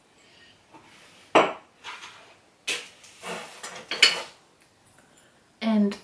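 Dishes and glassware knocking and clinking as they are handled and set down, with three sharp knocks and rummaging between them. A short vocal sound comes near the end.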